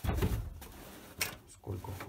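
Fiberglass mould shell set down on a work table with a thump, then a sharp click about a second later as a small metal latch on the shell is handled.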